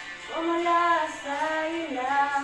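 A young woman singing a Spanish-language worship song solo. After a short breath she holds long notes, and the phrase falls in pitch near the end.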